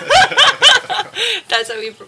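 A woman chuckling and laughing lightly between words.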